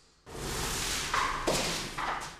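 A sanding block rubbed by hand over a painted wall: a steady rasping scrape that begins about a quarter second in, with a brief higher squeak and a click near the middle.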